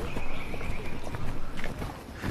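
Footsteps on a hard path, with a high steady trill in about the first second.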